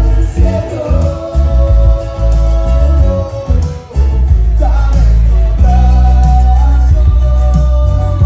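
Live band music: electric bass and a small acoustic guitar, with a man singing long held notes.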